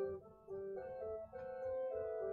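Organ music: held chords that move to a new chord about twice a second, with a short dip in loudness just after the start.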